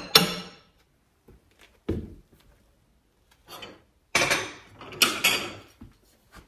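Porcelain china being handled on a cabinet shelf: a sharp clink with a brief ring at the start, then a duller knock about two seconds in. Rustling handling noise follows in the second half.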